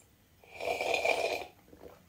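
A single slurping sip from a mug, about a second long, with a thin whistle in it.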